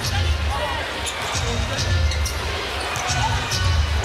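Live arena sound from a basketball game: low thuds of a basketball dribbled on a hardwood court, repeated about every second and a half, over a constant din of background voices and arena music.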